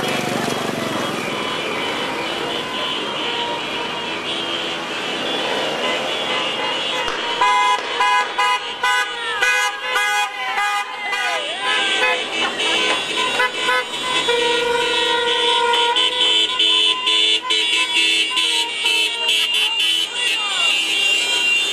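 Many car horns honking from a slow-moving procession of cars and motorcycles, with engines and voices underneath: a street celebration of an election win. The horns pile up and sound almost continuously from about a third of the way in.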